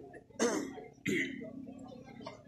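Someone clearing their throat: two short, rough bursts less than a second apart.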